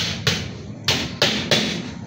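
Hand hammer driving nails into the top of a wall: five sharp blows in quick, uneven succession.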